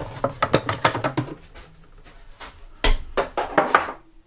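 Hard plastic parts of an Eheim Pro3 2080 canister filter clicking and knocking as the pre-filter tray is handled and lifted out, with a quick run of light clicks in the first second or so and a louder burst of clicks near the end.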